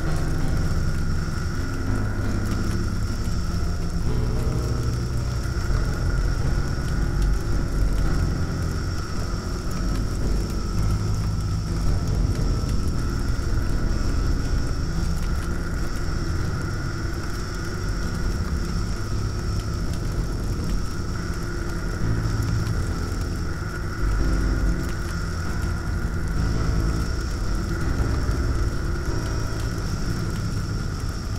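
Experimental noise music: a dense low rumble that wavers in loudness, under two steady high-pitched drones.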